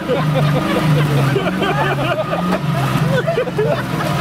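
A vehicle engine running steadily, under several people talking indistinctly.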